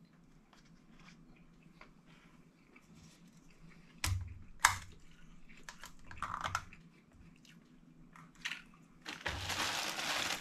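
Faint chewing with a few sharp clicks and knocks in the middle, the loudest about halfway through. In the last second a plastic bag of tortilla chips starts crinkling as a hand reaches into it.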